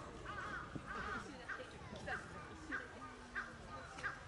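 A bird calling in a regular series of short, harsh calls, a little under two a second, over a murmur of distant voices.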